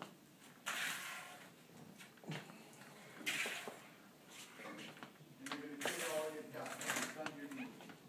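Soft scrapes of a wheeled walker and sneakers shuffling on a wooden floor, a few seconds apart, in a small room with faint voices in the background.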